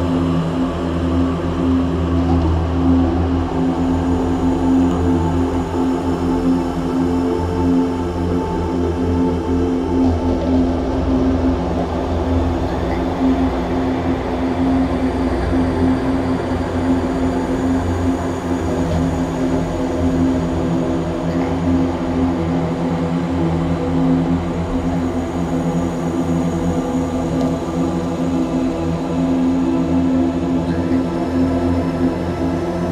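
Dark ambient drone music: a steady, sustained cluster of low tones over a dense rumbling bed, with no beat or melody breaks.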